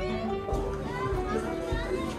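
Background music with a steady beat, about one beat every 0.6 seconds, and a gliding melody line over it.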